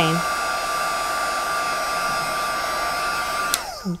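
Marvy craft heat tool (embossing gun) running steadily with a whine from its fan, melting gold embossing powder. About three and a half seconds in it is switched off and its pitch falls as it winds down.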